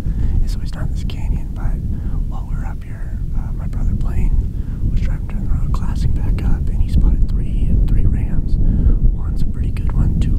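Hushed, whispered speech over a heavy, steady low rumble.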